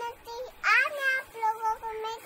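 A toddler's high-pitched voice vocalizing in a sing-song way: one rising call about half a second in, then a string of short syllables on one pitch.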